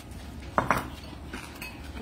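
Two quick clinks of cutlery against a plate, a little over half a second in.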